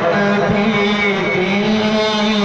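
A man's voice singing a long, held note in a naat (devotional poem in praise of the Prophet), the pitch steady with a slight waver.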